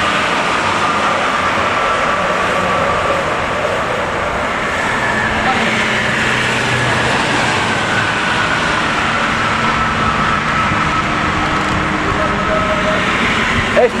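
Highway traffic: cars and a coach passing at speed, a steady wash of tyre and engine noise with a faint whine that falls slowly in pitch over several seconds.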